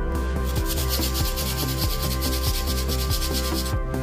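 Background music with a quick, even rubbing of an abrasive over a wall surface on top of it. The rubbing starts just after the beginning and stops shortly before the end.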